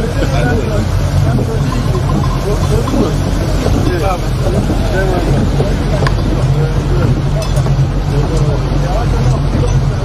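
Motorboat engine running steadily under way, a constant low drone, with wind buffeting the microphone and several voices talking over it.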